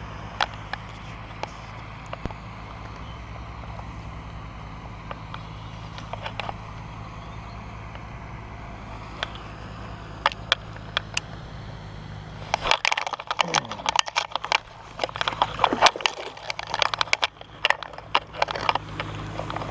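A steady low hum with scattered sharp clicks from handling a baitcasting rod and reel. About thirteen seconds in, a dense, louder run of clicks, knocks and rustling noise starts as a largemouth bass is hooked and fought on the bent rod.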